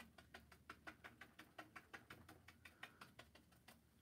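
Faint, quick taps of a paintbrush dabbing acrylic paint onto canvas, about seven a second, as bushes are stippled in.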